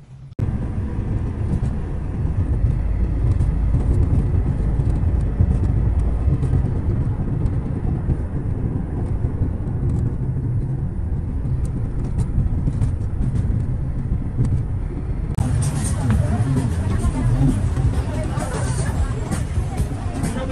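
Steady low rumble of a road vehicle driving along a city street. About fifteen seconds in it cuts to the chatter of a crowd.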